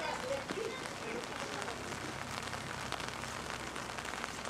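Steady patter of rain, with faint voices in the first second.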